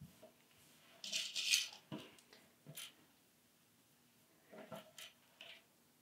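Faint handling sounds of knit fabric being smoothed on a wooden surface: a brief rustle about a second in, then a few soft scattered clicks and taps.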